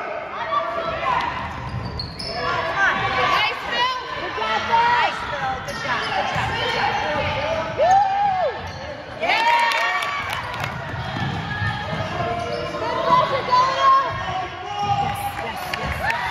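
Basketball bouncing on a hardwood gym floor during play, with short squeaks from sneakers and indistinct shouts from players and spectators, echoing in the gym.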